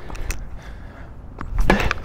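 Tennis ball being struck by racket strings and bouncing on a hard court during a baseline rally: several short sharp pops, the louder ones near the end.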